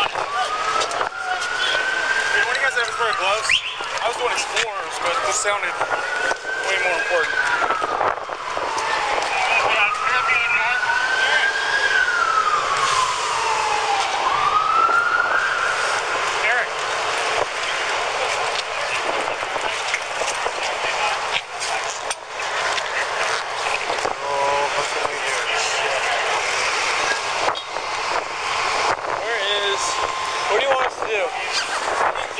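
An emergency vehicle siren wailing, its pitch sweeping up and down about every four seconds, over steady street noise. The wail stops about halfway through.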